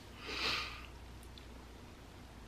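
A man sniffs once, a short breathy sound about half a second in, while choking up and holding back tears.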